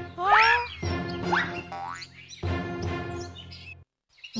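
Cartoon background music in short phrases, with comic sound effects that slide up and down in pitch over it in the first half. The music cuts off suddenly just before the end.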